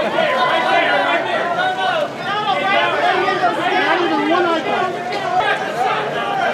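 Many voices talking and calling out over one another at once: a busy crowd's chatter, with no single voice clear.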